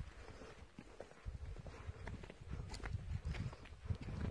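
Footsteps on bare rock, shoe soles tapping and scuffing at a walking pace, over a low rumble from about a second in.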